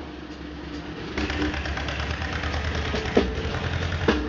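A steady low engine rumble, joined about a second in by a loud hiss, with the band's drumming stopped.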